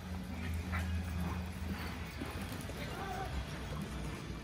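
Hoofbeats of several horses moving over the soft dirt of an indoor arena, irregular knocks over a steady low hum.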